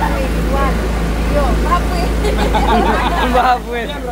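Several people talking over one another and laughing, over a steady low rumble that stops about three and a half seconds in.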